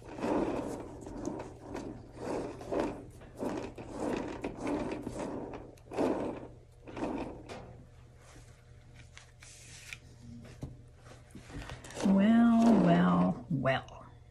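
A run of soft rubbing strokes lasting about seven seconds as a plastic swipe strip is drawn through wet paint on a hand-spun canvas. Near the end comes the loudest sound, a woman's voice holding a drawn-out note that steps down in pitch.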